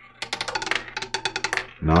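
Roulette ball clattering over the metal pocket separators and rotor of a spinning double-zero roulette wheel: a fast run of small clicks starting a moment in and stopping shortly before the end, as the ball bounces from pocket to pocket before settling.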